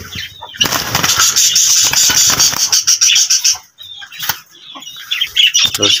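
A green parrot flapping its wings in a wire cage, a dense rustling flutter lasting about three seconds, followed by a few light clicks and rustles.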